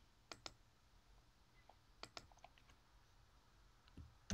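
Near silence with faint computer input clicks: a quick double click about a third of a second in, another about two seconds in, then a few lighter ticks.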